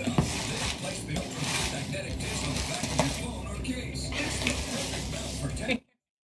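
Hands rummaging through a box packed with shredded paper, a steady crinkly rustle with small crackles, which cuts off suddenly near the end.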